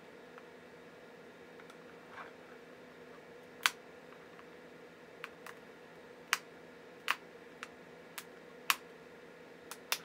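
Sharp, separate plastic clicks and snaps, about eight of them starting about a third of the way in, the first the loudest, as the glued plastic case of a Compaq Concerto battery is pried apart along its seam with flat-head screwdrivers; the case is cracking as it is worked open. A faint steady hum runs underneath.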